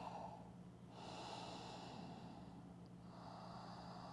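Faint, slow breathing through the nose by a person hanging in a forward fold: one long breath starts about a second in, and another starts about three seconds in.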